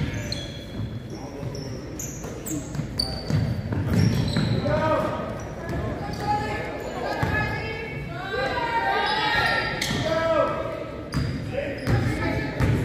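Basketball dribbled on a hardwood gym floor, with short sneaker squeaks as players run and cut. Players and spectators call out, mostly in the second half, echoing in a large gym.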